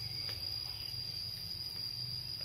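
A steady, high-pitched insect drone, like crickets, over a low steady hum.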